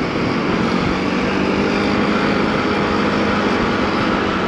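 Motorcycle riding at a steady speed: a steady engine note under a constant rush of wind over the helmet-mounted microphone.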